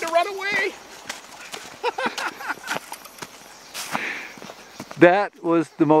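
Footsteps of a man running over snow and onto river gravel, a string of short uneven thuds, with a man's voice over the opening moment and again near the end.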